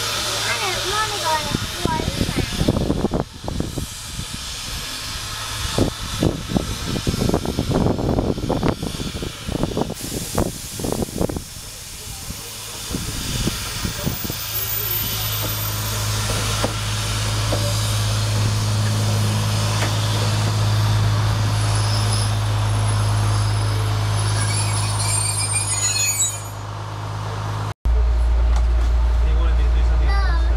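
A vintage rail motor approaching and then idling, its engine giving a steady low hum, after about twelve seconds of irregular knocks and rattles with hiss from a steam locomotive. Near the end the sound cuts to a louder, deeper engine drone heard inside the railcar's driving cab.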